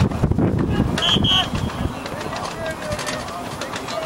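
Shouts and calls of young rugby players carrying across an open pitch during play, loudest in the first second and a half, with two short high chirps about a second in.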